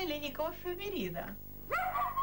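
A woman speaking, then, near the end, a dog barking with a sharp rising yelp.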